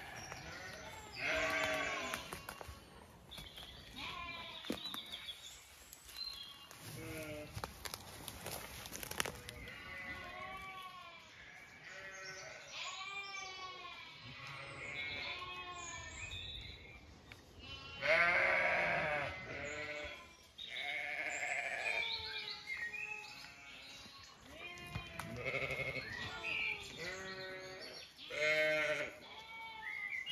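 Zwartbles sheep bleating, call after call, several often overlapping. The loudest calls come about eighteen seconds in and again near the end.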